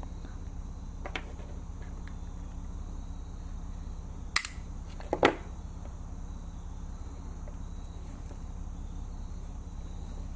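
Small plastic housing of a USB-C to 3.5 mm headphone adapter being pried apart by hand: a few faint clicks, then one sharp snap a little past four seconds in as the housing gives, over a steady low hum.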